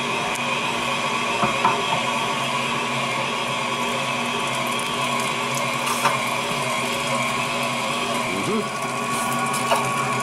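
KitchenAid stand mixer running steadily at an even pitch, driving its meat grinder attachment as pork and chicken are fed through and ground.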